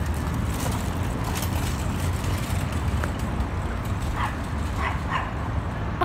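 Outdoor park ambience: a steady low rumble, with a few faint short yelps about four to five seconds in.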